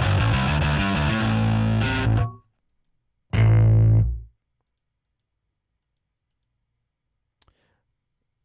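Sampled electric bass from Native Instruments' Session Bassist: Prime Bass, played from a MIDI keyboard with a distorted tone. A run of notes lasts about two seconds, then a single low note sounds about three seconds in and is held for about a second.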